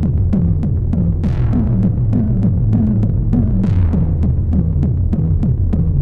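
Gabber hardcore techno: a distorted kick drum pounds about four times a second, each hit dropping in pitch, under a low hum. Two swells of hiss rise over it, about a second in and again past three seconds.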